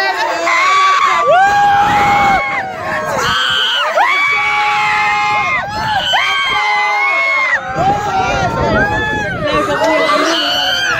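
A group of riders on an amusement ride screaming and whooping together, long held screams overlapping one after another.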